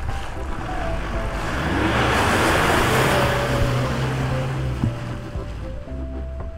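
Ford Ranger pickup driving past on a muddy, slushy dirt track: engine and tyre noise swell to a peak about two to three seconds in, then fade as it pulls away. Background music plays underneath.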